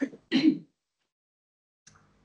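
A single short throat clearing just under half a second in, heard over a video-call line.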